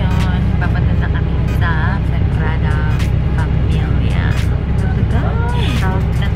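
Steady low rumble of a tour bus's engine and road noise heard inside the cabin, with scattered clicks and rattles and faint indistinct voices or music over it.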